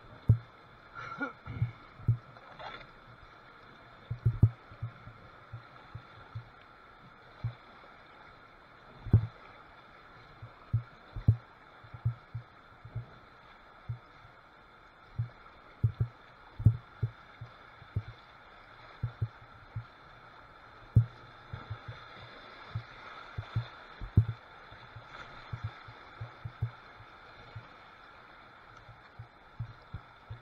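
Kayak running river rapids: irregular short, low thumps against the hull from water and the paddle strokes, over a faint steady rush of water.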